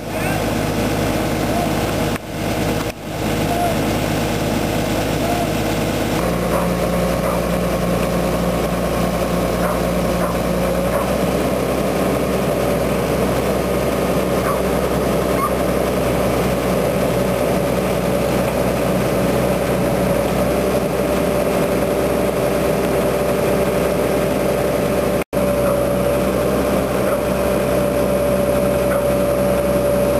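Engine of the Caterpillar lifting machine running steadily while it holds a bucket with two workers and a hoisted wind-turbine nacelle. The engine note changes about six seconds in and again around eleven seconds.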